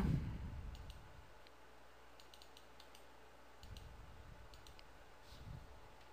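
Faint, scattered single clicks of a computer mouse, with a couple of soft low thumps in between.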